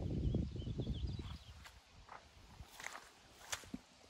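Footsteps of a person walking on grass, with a low rumble for the first second and a half, then a few soft scattered steps.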